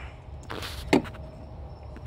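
A short hiss of aerosol throttle body cleaner sprayed into an open throttle body, lasting about half a second, followed by a single sharp knock just under a second in.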